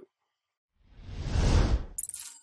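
A whoosh transition sound effect swelling up out of silence about a second in, with a deep rumble under it, and stopping sharply.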